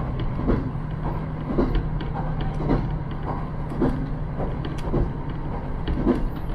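Inside a KiHa 54 diesel railcar running at speed: a steady low diesel drone, with the wheels clacking over rail joints about once a second.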